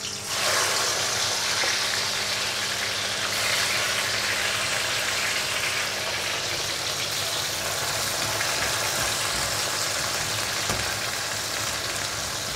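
Slices of salted bitter gourd (karela) go into hot oil in an iron kadhai and set off a sizzle that jumps up about half a second in. It then settles into a steady deep-frying hiss over a high flame.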